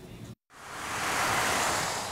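A vehicle passing on a wet road: tyre hiss swells up, peaks and fades away.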